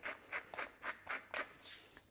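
Hand-twisted pepper mill grinding peppercorns, a quick series of short dry rasps, about three or four a second.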